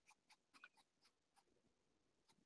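Near silence with several faint, short scratches of a paintbrush dabbing acrylic paint onto a fabric suitcase.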